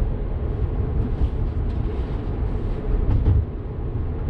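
Steady road and tyre rumble heard from inside a moving car's cabin at cruising speed, with a slightly louder bump a little past three seconds in.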